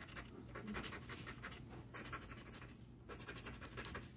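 Plastic scratcher rubbing the coating off a lottery scratch-off ticket: a quick run of faint, dry scratching strokes.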